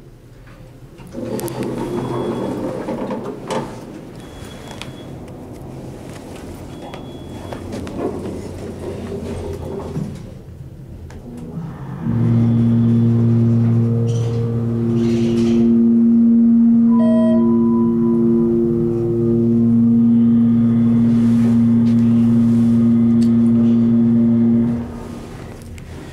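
Hydraulic elevator pump motor, the original motor now on a solid-state starter, starting about halfway through with a loud, steady hum and running as it lifts the car, then cutting off shortly before the end. Before it, rumbling and a few short high beeps; partway through the run a single brief chime sounds.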